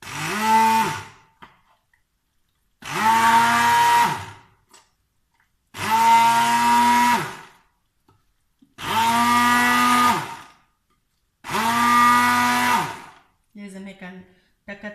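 Handheld stick blender run in five short pulses, each about a second and a half, in a glass jug of thick cheese curd. The motor pitch rises as it spins up and falls as it stops each time.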